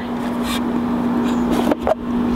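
Pool sand filter pump running with a steady hum while water churns down into the open skimmer, with a sharp plastic click about half a second in and another near the end as the skimmer lid is lifted off.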